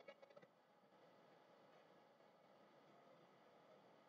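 Near silence with a faint steady hiss. The last of the game's music dies away in the first half second.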